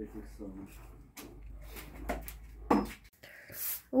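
Quiet patio sounds with faint low voices, then a broom swishing once across stone paving near the end, sweeping up fresh wood-chip mulch.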